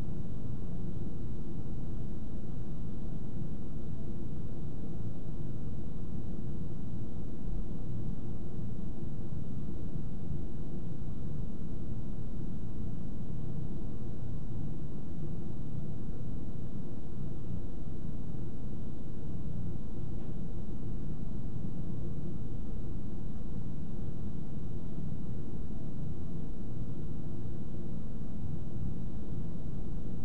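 Steady low rumble of room background noise, unchanging throughout, with no distinct events.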